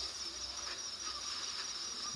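Faint, steady high-pitched trilling of crickets, an even insect chorus with no other sound standing out.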